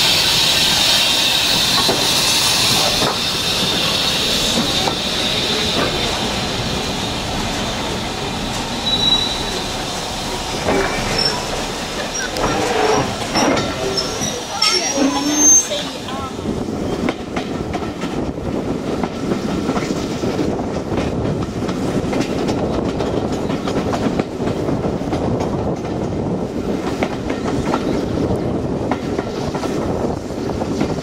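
A steam locomotive letting off a strong hiss of steam as the train moves off. This gives way to a carriage running on the rails, a steady rumble with rhythmic clicking over the rail joints, and a few short high wheel squeals around the middle.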